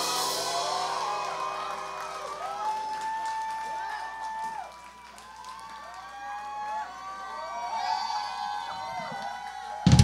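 Live audience cheering and whooping as a song ends, with many long 'woo' calls rising and falling in pitch over the last chord, which fades out within the first few seconds. A single sharp thump near the end, as the microphone is handled.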